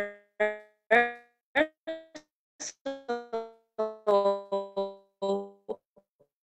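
A melody played on a piano-like electronic keyboard: a quick run of single notes, each fading away fast, that stops just before the end.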